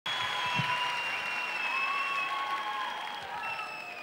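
Concert audience applauding, with several long high-pitched calls from the crowd above the clapping; it eases off a little toward the end.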